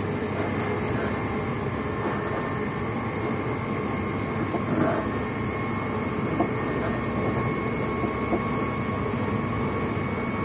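Passenger train running at speed, heard from inside the carriage: a steady rumble of wheels on track with a thin steady whine above it.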